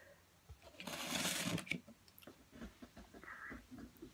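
A paper plate slid across a wooden table, a brief scraping rustle about a second in, with a few light taps of handling around it.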